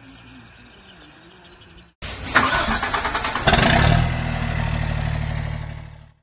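Mercedes-Benz 1113 truck's six-cylinder diesel engine starting up. A loud burst of cranking and revving settles into a steady low running note, which fades out near the end. The first two seconds are quiet, with a few bird chirps.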